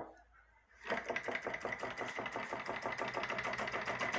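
Homemade tin-can Stirling engine starting after a hand spin of its flywheel: near silence, then about a second in it begins running with a rapid, even clatter of its can-and-wire crank and linkage. It has only just caught and is still warming up and gathering speed.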